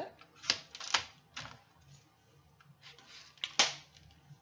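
Paper being trimmed with a cutting tool: three sharp cutting clicks in the first second and a half, then a louder one near the end.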